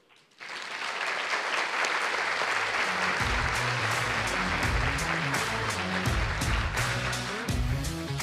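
Audience applauding, starting about half a second in, with background music carrying a bass line and beat coming in about three seconds in.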